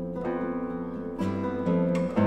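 Trio of nylon-string classical guitars playing slow sustained chords, the notes ringing on, with a new chord plucked a little over a second in.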